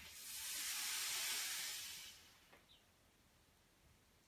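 A long breath blown out through the mouth, a steady hiss that swells and fades over about two seconds: the exhale cued for the corkscrew's leg rotation.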